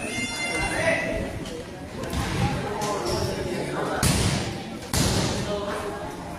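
Wrestlers' bodies thudding on a boxing-style ring mat, with two sharp thuds about a second apart in the second half, amid voices calling out from the small crowd.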